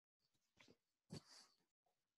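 Near silence on a video-call audio line, broken by two faint brief sounds around the middle.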